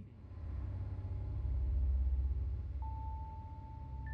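Deep, low background drone that swells and then eases off, with a single steady high note coming in near the end.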